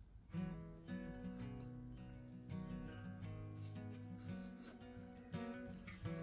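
Background music: an acoustic guitar playing a run of plucked notes, starting about a third of a second in.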